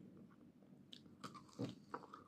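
Close-miked eating: a French fry dipped in ketchup and mayonnaise, then bitten and chewed, faint, with a few short clicks. The loudest bite comes about one and a half seconds in.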